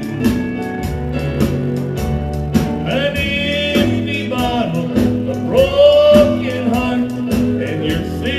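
Live country band playing a honky-tonk song: drums with cymbals keeping a steady beat under a keyboard and guitar, with a bending lead melody line on top.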